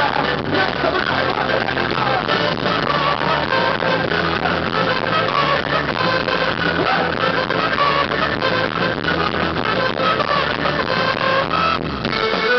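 A live ska-rumba band playing loud and steady: drums, electric bass and guitar, with a trumpet playing over them.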